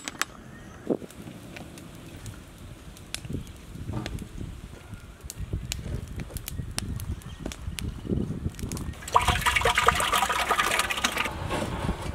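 Open wood fire burning under a large cooking pot: a low rushing of flames with scattered sharp crackles and pops, turning louder and denser for about two seconds near the end.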